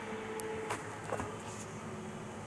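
Steady low hum of a kitchen appliance, with a few light clicks as a plastic bowl and plate are handled.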